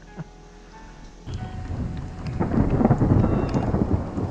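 Thunder rolling in over rain: a rumble that starts suddenly about a second in and builds to its loudest near the end.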